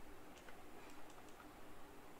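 Faint computer keyboard keystrokes: a handful of separate, irregularly spaced key clicks.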